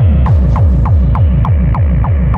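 Hardcore techno: a fast, even pounding of kick drums, about four a second, each one dropping in pitch, over a steady synth tone and hi-hat ticks. A short hissing swish rises and fades about a quarter second in.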